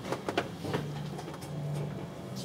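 Automotive battery charger being turned up: a few clicks of its control in the first half second, then a low hum that comes in under a second in.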